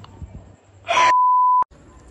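An edited-in bleep: one steady pure tone of about two-thirds of a second, with the rest of the audio muted under it, starting about a second in right after a short burst of noise and ending with a click.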